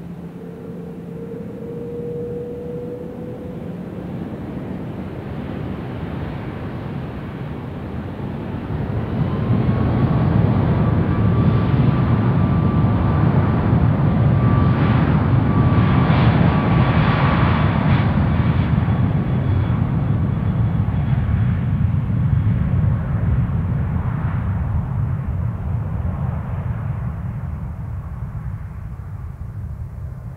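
Boeing 777-200ER's two turbofan engines at takeoff thrust during the takeoff roll. A deep rumble builds about a third of the way in and is loudest as the jet passes, with a steady whine over it, then fades as it rolls away.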